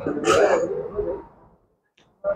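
A man clearing his throat into a microphone, one rough sound lasting about a second and a half.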